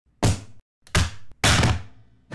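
Three heavy hit sound effects in quick succession. Each is a sudden deep thud that rings out briefly, and the third rings the longest.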